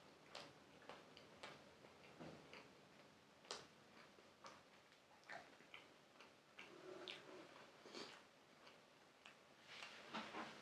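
Faint close-up chewing: soft, irregular mouth clicks and smacks as a mouthful of food is chewed.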